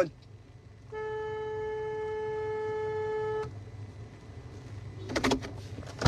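A steady, buzzy single-pitched tone held for about two and a half seconds, starting about a second in, over the low steady rumble of a car's interior; a brief rustle near the end.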